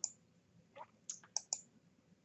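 A few faint, short clicks of a computer mouse, clustered around a second in, as the slide is advanced.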